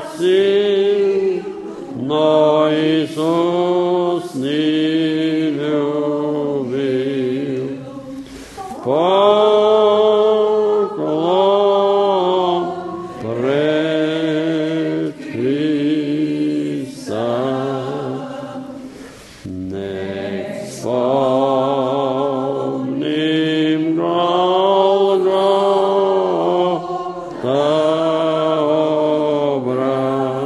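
Slow hymn singing in long held notes with vibrato, phrase after phrase with short breaks between them.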